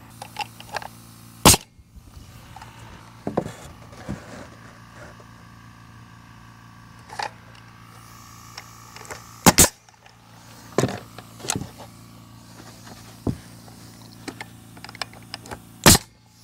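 Pneumatic nail gun firing single nails into a treated-lumber fence board: three sharp shots, about a second and a half in, near the middle and at the very end. Between the shots come small knocks and clicks of the board and level being handled.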